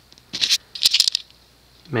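Two short bursts of rattling and clicking handling noise, about half a second in and again about a second in, as the recording device is moved closer to the fan.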